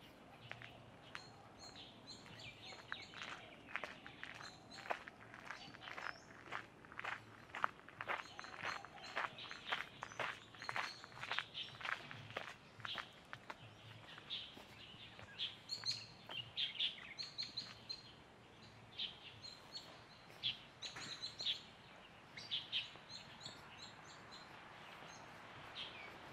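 Footsteps of someone walking on a path, about two steps a second, through the first half. Then short high chirps of birds come scattered through the rest, over faint steady outdoor background noise.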